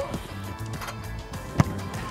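A football struck on the volley: one sharp thud about one and a half seconds in, over background music.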